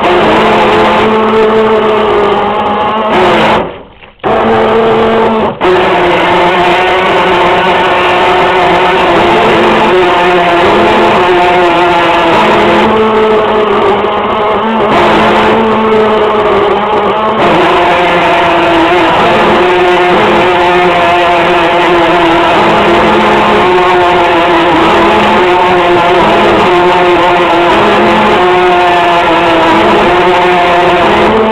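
RC boat's motor running continuously, recorded close up by the onboard camera, its pitch wavering slowly with the throttle; the sound cuts out briefly about four seconds in.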